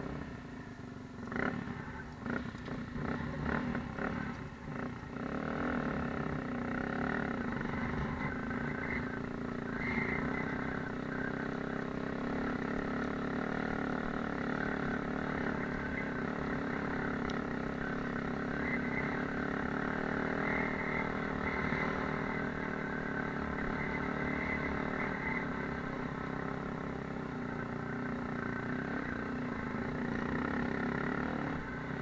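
Dirt bike engine running while it is ridden over a rocky off-road track, heard from on the bike. It is choppy and uneven for the first few seconds, with knocks from the rough ground, then settles into a steady drone.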